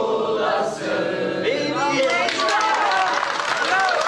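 A group of people singing a song together, with hand clapping joining in about halfway through.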